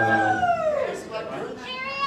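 A man's voice at the microphone making two high, sliding vocal calls. The first falls in pitch over about a second, and the second rises and then falls near the end.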